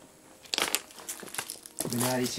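Footsteps crunching on loose stones and gravel: a cluster of sharp crunches about half a second in, then lighter scattered scuffs.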